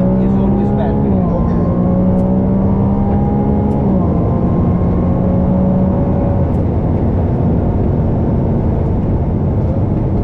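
Ferrari 296 GTB's twin-turbo V6 running at a steady note under heavy wind and road rush. The note steps down in pitch twice, about a second in and about four seconds in, then fades under the rush.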